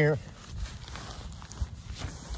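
A person crawling on hands and knees over dry grass and a foam sleeping pad beneath a poncho shelter: soft rustling with a few dull knocks.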